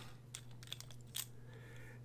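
Faint clicks and ticks from a plastic fountain pen's barrel being unscrewed and pulled off its grip section, a few scattered clicks over a steady low hum.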